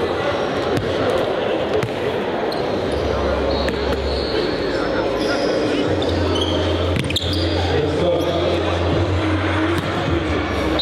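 A basketball is dribbled on a hardwood gym floor under a steady murmur of crowd talk, with a few short, high sneaker squeaks.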